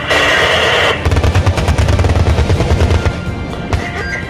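Type 87 self-propelled anti-aircraft gun firing its twin 35 mm autocannons in a rapid burst. The burst starts about a second in and lasts about two seconds, heard over background music.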